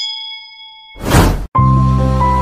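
A notification-bell ding sound effect, a bright bell tone with several overtones fading out over about a second, followed by a whoosh and then background music starting about one and a half seconds in.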